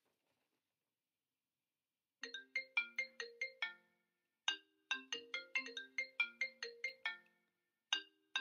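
Mobile phone ringtone playing after about two seconds of silence. It is a fast run of short, bright, plucked-sounding notes in two phrases with a short break between them, the second phrase longer.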